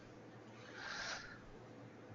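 Quiet conference-call line with a faint hum, and one short, soft breathy noise about a second in.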